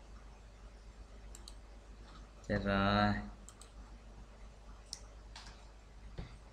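A few sharp, scattered computer-mouse clicks, and about two and a half seconds in a man's short, drawn-out 'hmm' or 'ờ' lasting under a second, the loudest sound.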